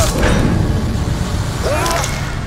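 Film-trailer sound design: a loud, dense low rumble that follows a hit at the start, with a short voice-like cry near the end.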